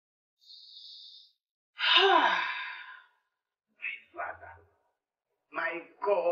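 A woman crying: a hissing breath drawn in, then a loud sobbing moan that falls in pitch, followed by short broken sobs.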